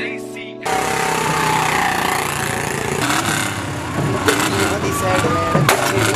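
A song fades out; a little under a second in, loud street noise takes over: motorcycle and car engines running, mixed with voices and music, with several sharp knocks in the second half.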